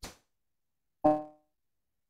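Broken-up livestream audio as the call connection drops: a brief click, then about a second in a short pitched tone that fades within half a second, with silence around both.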